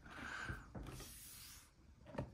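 Faint handling noise of a cardboard toy box with a plastic window being moved and held up: soft rustling hiss with a few light clicks.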